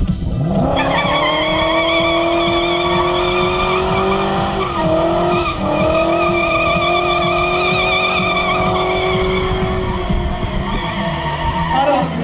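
BMW E39's V8 engine held at high revs while the rear tyres spin and squeal in a smoky burnout, the pitch climbing in the first second and then held steady, with a brief dip around five seconds in.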